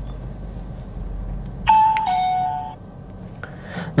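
Electronic two-note ding-dong chime, a short higher note then a longer lower one, sounding once a little under two seconds in, over the low rumble of a car cabin on the move.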